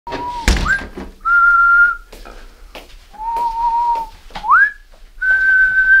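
A man whistling with pursed lips: a slow run of long held notes, some reached by a quick upward slide. A thump sounds about half a second in.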